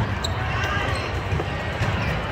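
Indoor volleyball rally: the ball is struck sharply about a quarter second in, then a lighter knock past halfway, over steady spectator chatter echoing in a large hall.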